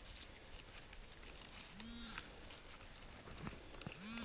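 Faint rustling and light ticks of soil and leaf litter being worked by gloved hands with a handheld pinpointer, with a short hummed "mm" from the digger about halfway through.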